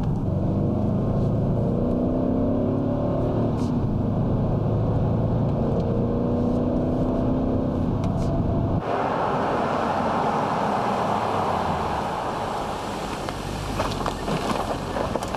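BMW X5 SUV engine running under acceleration, its pitch rising in stretches over a low rumble. About nine seconds in, the sound cuts abruptly to a steady rushing of tyre and road noise.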